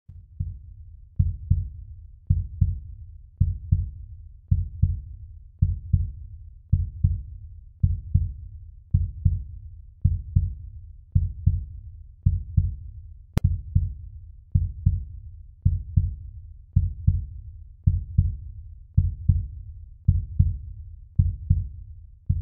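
Heartbeat: steady paired low thumps, lub-dub, a little under once a second. A single sharp click comes about halfway through.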